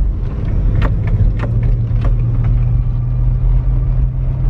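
Car engine and road noise heard from inside the cabin while driving slowly: a steady low hum, with a few light clicks.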